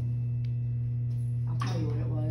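A steady low hum, with a faint short click about half a second in.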